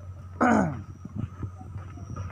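A single short vocal cry that falls in pitch, about half a second in, over soft irregular ticks and a low steady hum.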